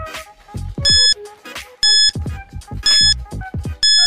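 Quiz countdown-timer sound effect: a short, high electronic beep about once a second, four times, over background music with a low beat.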